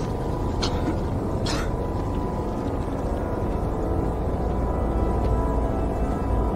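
Tense, ominous film score: a low, steady droning bed of sound with a few short hissing swells early on.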